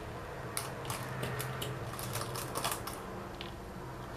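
A scattering of light clicks and ticks, most of them within the first three seconds, as sewing pins are picked up and handled by hand, over a low steady hum.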